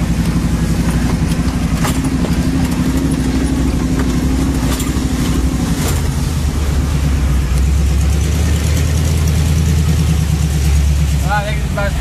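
Chevy 350 V8 in a 1979 Jeep CJ-5 running at low speed under load on a rough trail, heard from inside the Jeep, with a few sharp knocks as it crawls over the ground. About halfway through the engine note turns deeper and heavier.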